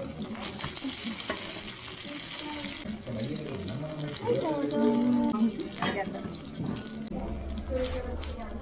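Okonomiyaki sizzling on a hot teppan griddle, with a few short scrapes and clicks of a metal spatula cutting and lifting it, and a voice briefly heard midway.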